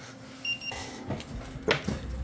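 Handheld infrared thermometer beeping once, a short high beep about half a second in as a reading is taken, followed by a brief rustle of handling.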